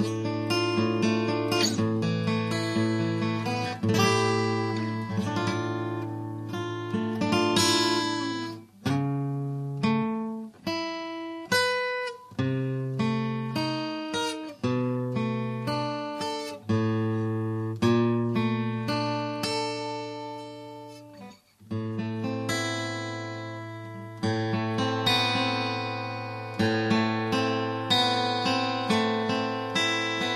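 LAG Tramontane T333JCE cutaway acoustic guitar played fingerstyle: a low bass note rings under picked melody notes and chords. The playing breaks off briefly a few times, letting the notes die away.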